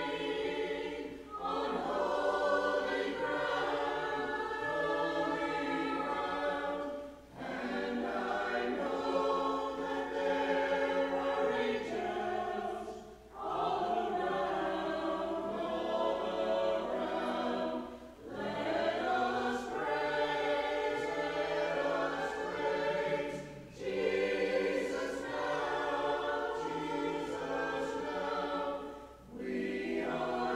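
A small mixed church choir of men and women singing together, in sung phrases broken by short pauses for breath about every five to six seconds.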